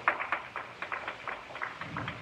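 Hands clapping: a quick, uneven run of claps.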